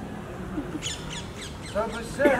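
A bird calling: a quick run of about six short, high, falling squawks about a second in. A voice starts singing again near the end.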